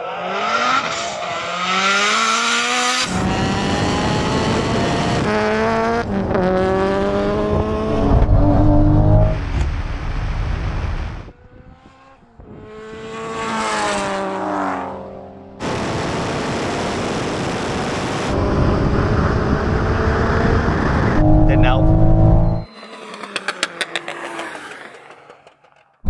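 Two tuned turbocharged cars, a Toyota Supra with a three-litre straight-six and a Nissan Silvia S15 with a 2.2-litre four-cylinder, accelerating flat out in a rolling drag race. The engine note climbs hard and drops back at each upshift, over several stretches. The Silvia is running with anti-lag engaged, which its driver finds holds back the power. Near the end it goes quieter, with a rapid run of pops.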